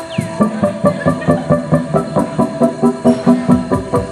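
Live electronic music from synthesizers and a pad controller: a sequence of short, plucked-sounding pitched synth notes pulsing about four a second, which comes in strongly a fraction of a second in.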